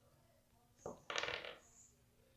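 Plastic action figures being picked up and handled: a light knock just before a second in, then a short clatter lasting about half a second.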